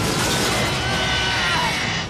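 Background music over a loud, continuous rushing blast: an animated sound effect of an attack's explosion.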